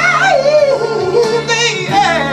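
Male soul singer belting a wordless run into a handheld microphone, a long wavering note that slides down in pitch, over an instrumental backing track.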